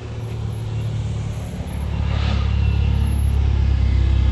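Car engines and tyres of a slow-moving convoy driving past, growing steadily louder as the next car approaches.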